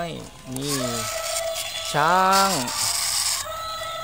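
Battery-powered walking toy animals running on asphalt, playing steady electronic tones over a rasping whir of their plastic gears.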